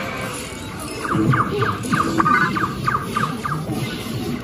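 Ride soundtrack music, joined about a second in by a rapid run of short electronic zaps, about four a second, for a couple of seconds: the ride's hand-held laser blasters firing at animatronic aliens.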